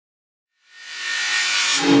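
A rising hiss of noise, like a whoosh or reversed cymbal swell, builds for about a second and cuts off near the end as a low hummed 'mm-hmm' comes in.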